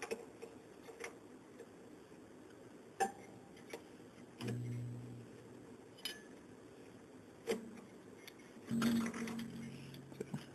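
An acoustic guitar string being loosened with a crank string winder on the tuning peg: scattered clicks and ticks of the winder and tuning machine, and the slackening steel string ringing a low note twice, midway and near the end.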